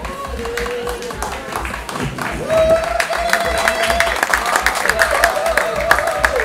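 Audience clapping in applause, with a long, slightly wavering held note coming in about two and a half seconds in.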